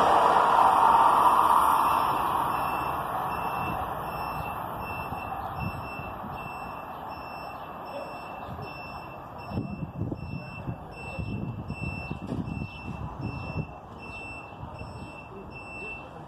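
An Amtrak passenger train's rumble fading away as it recedes, over the first two seconds. Then a high electronic beep repeats steadily about twice a second, with wind gusting on the microphone in the second half.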